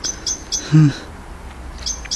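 A small bird chirping in short, high, repeated notes, three near the start and another run beginning near the end. Between them, a brief low vocal sound just under a second in is the loudest moment.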